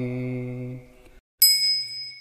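The held last note of a man's chant fades out. After a short pause, a small bell is struck once, giving a bright, high ring that dies away within about a second.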